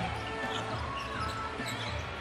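Basketball being dribbled on a hardwood court, over a steady low arena hum.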